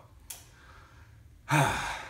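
A man sighs once near the end: a short, loud, breathy exhale with a little voice in it, after a quiet pause.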